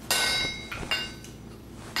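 Smith's hammer striking red-hot iron, ringing metallically: one loud strike at the start that rings on for about half a second, then lighter knocks about a second in.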